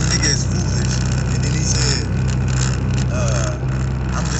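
Steady road and engine noise inside a moving car's cabin, with a voice over it.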